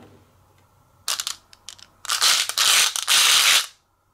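Marbles clattering in a plastic measuring cup: a short rattle about a second in, a few light clicks, then a dense rattle of about a second and a half that cuts off shortly before the end.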